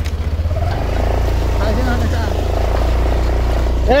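Motorbike engine running at low speed during a ride, a low rumble that pulses evenly at first and then evens out, with faint voices in the background.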